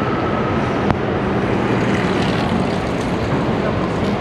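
Steady city street traffic noise, with a single click about a second in.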